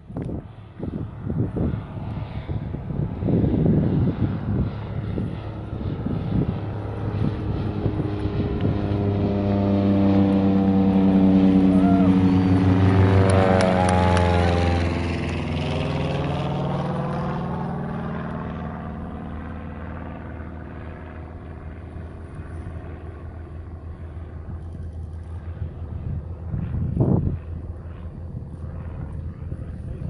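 The magniX eCaravan, a Cessna 208B Grand Caravan retrofitted with a 750-horsepower all-electric motor, flies by overhead just after takeoff. Its propeller drone swells to a peak about halfway, then drops in pitch and fades as the plane flies away. A short thump comes near the end.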